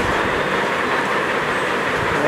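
Steady rushing background noise with no clear voice, at an even level throughout.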